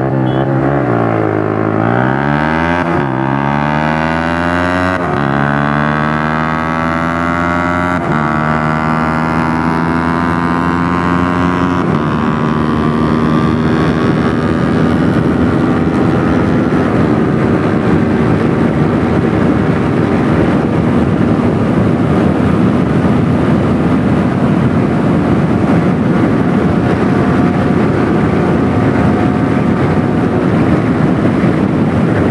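Yamaha R15 V3's 155 cc single-cylinder engine under hard acceleration, revving up and upshifting four times in quick succession, each shift a sudden drop in pitch. It then holds high revs at speed with growing wind rush.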